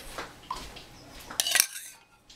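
Metal spoon clinking against dishes: a few light clicks, then the loudest run of ringing clinks about one and a half seconds in.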